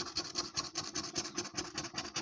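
A metal coin scraping the coating off a paper scratch card in quick, repeated back-and-forth strokes.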